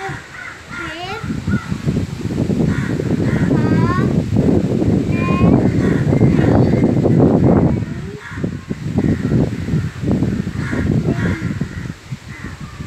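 A young boy reading aloud from a book, sounding out the text, with birds chirping in the background.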